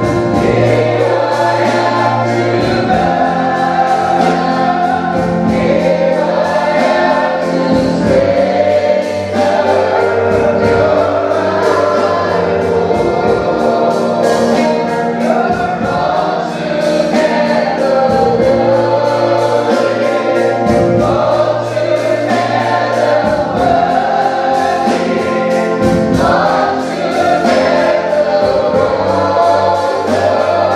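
Live gospel praise-and-worship music: a lead singer and backing singers on microphones, with electric keyboard accompaniment and a steady beat.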